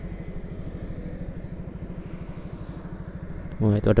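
Motorcycle engine idling with a steady, even low putter.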